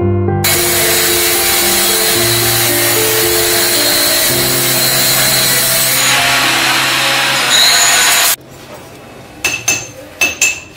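A power tool running loudly and steadily on metal in a machine shop, cutting off suddenly about eight seconds in, followed by a few sharp metal clinks. Background music plays underneath.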